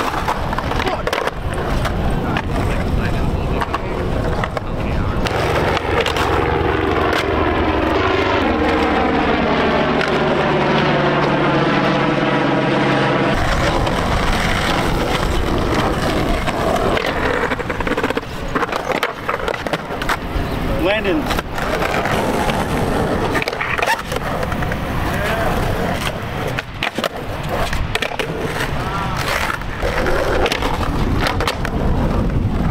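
Skateboard wheels rolling on concrete, with clacks and scrapes as the board hits and grinds a curb during slappy curb tricks.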